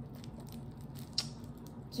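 Faint handling of a small plastic packet by fingers trying to open it, with one sharp click a little past a second in, over a low steady hum.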